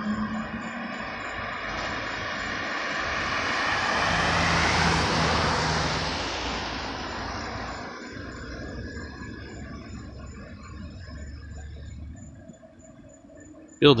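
A road vehicle passes close by: tyre and engine noise swells to a peak about five seconds in and fades away by about eight seconds, leaving a low engine hum.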